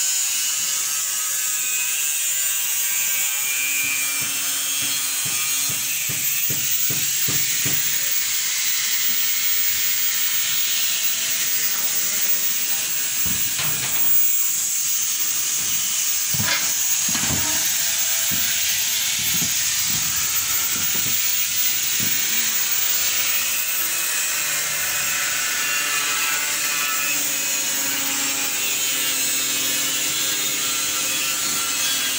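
A steady hiss runs through, with a stretch of scattered knocks in the middle and some faint voices in the background.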